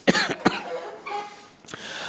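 A person coughing twice, about half a second apart.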